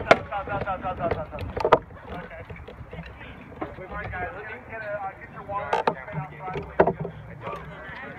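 Indistinct chatter of several people's voices, broken by a handful of sharp knocks or clicks: one at the very start, one just under two seconds in, and two more around six and seven seconds in.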